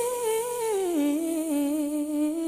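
A woman's solo voice singing one long wordless vowel with vibrato, stepping down in pitch and then holding a lower note, with almost no accompaniment.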